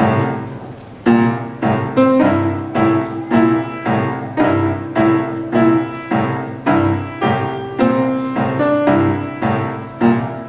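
Grand piano played solo. A chord rings out and fades over the first second, then chords are struck in a steady pulse of about two a second.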